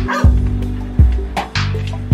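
Background music with a deep bass line and a steady beat of drum hits.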